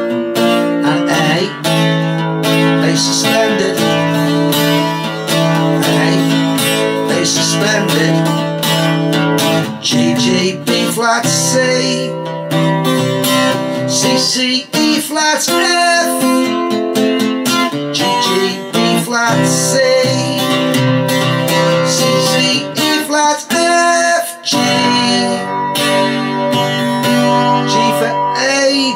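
Acoustic guitar strummed steadily through a chord progression, with a quick run of strokes on each chord.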